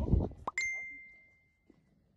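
A single clear, high ding about half a second in, ringing out and fading away over roughly a second.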